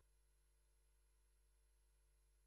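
Near silence, with only a very faint steady hum in the background.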